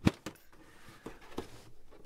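Plastic glove box of a 2023 Nissan Rogue being pressed inward at its sides: one sharp click at the start as a stop clears the dash opening, then a few faint ticks and light rustling.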